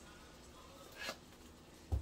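Quiet kitchen background, with a brief soft click about halfway and a dull low thump near the end as a sleeve brushes against the camera.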